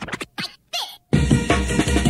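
Old-school hardcore rave music: about a second of choppy, scratch-like cuts with falling pitch glides and brief dropouts to silence, then the full track comes back in with a heavy kick-drum beat.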